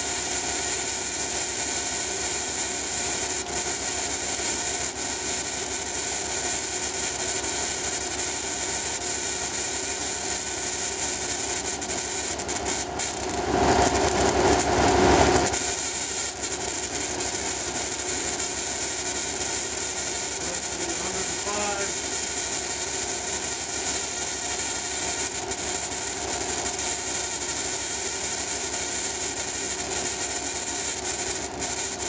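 Alternator-powered Tesla coil running: a steady electrical hiss and buzz from its arcing, over a constant machine hum. A louder rush of noise lasts about two seconds midway.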